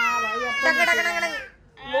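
A toddler's drawn-out whining cry, one long wail that breaks off about a second and a half in.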